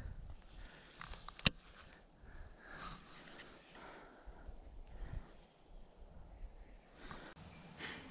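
Faint handling noise and breathing from an angler working a fishing line and lure in his fingers, with one sharp click about a second and a half in.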